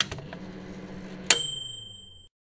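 Intro logo sound effect: a low steady hum, then about a second and a quarter in a sharp bright ding whose high ringing tone lasts to the end.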